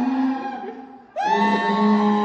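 Sousaphone blown through a baritone saxophone mouthpiece, giving a buzzy, reedy held note that fades away over the first second. A new note cuts in just after a second, scooping upward before holding steady.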